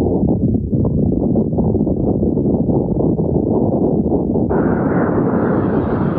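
Heavy surf breaking: a loud, deep, steady rumble of crashing water. About four and a half seconds in, the sound abruptly turns brighter and more hissing.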